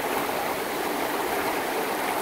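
Rocky mountain river rushing steadily over boulders in whitewater.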